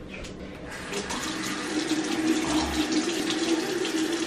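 Bathroom sink tap running steadily into the basin, louder from about a second in, as a washcloth is wetted for removing makeup.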